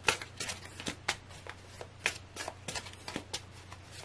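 A tarot deck being shuffled by hand: a quick, irregular run of short card clicks and snaps as the cards slide against one another.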